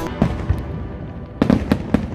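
Aerial fireworks bursting: two sharp bangs in the first half second, then a quick cluster of about four bangs near the end.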